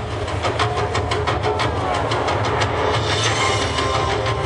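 Light-show soundtrack over loudspeakers: a fast, even clicking rhythm of about five beats a second over a low rumble, giving way to held tones about three seconds in.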